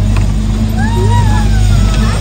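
Jeep engine running at a steady low drone as the vehicle drives along, heard from inside the open cabin. Passengers' voices call out over it.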